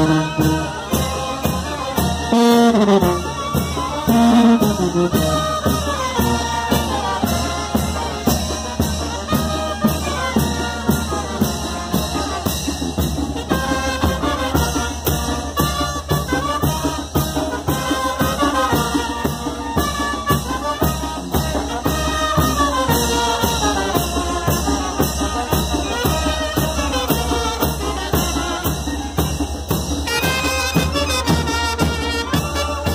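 Mexican brass band playing a chinelo dance tune live at close range: trumpets and trombones over a steady drum beat.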